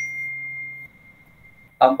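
A single bell-like ding: a clear high tone that starts suddenly and rings on for nearly two seconds before stopping.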